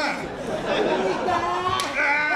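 People talking and calling out over one another in a large hall, with crowd chatter. There is a brief sharp click near the end.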